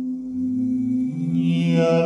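Wordless male chant-style singing built up in layers from a live loop: a held vocal note is joined by a lower sustained voice about a third of a second in and another about a second in, thickening into a drone that grows louder.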